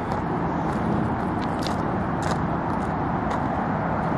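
A steady rushing outdoor noise with no pitch to it, holding an even level throughout, with a few faint light clicks over it.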